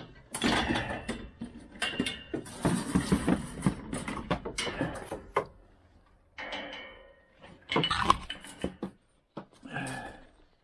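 Clattering, knocking and rustling of gloved hands handling a plastic bucket and a metal-sheathed cord against the metal wire panels of a pen, in two main bouts with a lull in between.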